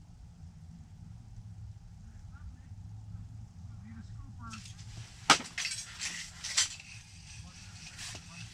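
A handful of sharp clicks and knocks, the loudest about five seconds in, over a steady low hum.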